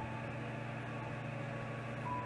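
A steady low machine hum with an even hiss over it, unchanging throughout.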